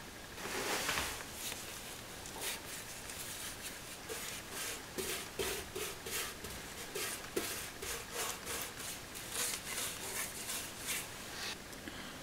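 Paintbrush strokes applying rust primer to the bare metal inside a car's rear wheel arch: quiet, scratchy brushing repeated at about one to two strokes a second.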